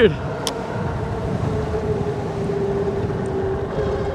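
Wind buffeting the microphone and road noise from an electric bike at speed. From about a second and a half in, a steady hum rises over it, the whine of the bike's hub motor under power.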